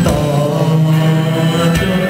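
A male vocalist singing a Thai pop song live through a handheld microphone, with band accompaniment and a sustained note held through most of the moment.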